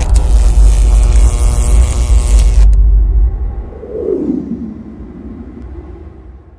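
Deep, loud rumbling outro sound effect that ends the track. Its upper hiss cuts off abruptly about two and a half seconds in. A single falling tone follows at about four seconds as the sound fades away.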